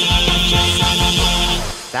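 Intro theme music with a steady beat, fading out shortly before the end.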